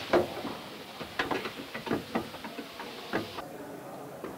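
Irregular clicks and light knocks of hose and cable fittings being handled and connected to a firing rig, over a steady hiss that cuts off about three and a half seconds in.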